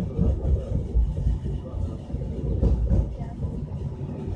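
Light rail train heard from inside the cabin, running along elevated track with a steady low rumble and a few heavier jolts from the rails.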